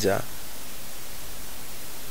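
Steady hiss of background noise in a pause between spoken phrases, with the tail of a word at the very start.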